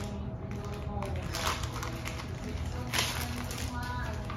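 Paper and plastic packaging rustling in two short bursts, about a second and a half in and again around three seconds, over a steady low hum.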